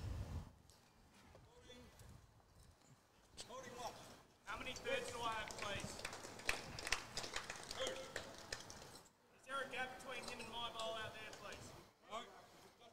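Faint background talking, in two stretches: from about four and a half seconds in, and again near the end. A low thump comes right at the start.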